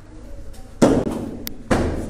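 Two sharp thumps, the first a little under a second in and the loudest, the second near the end, each dying away quickly.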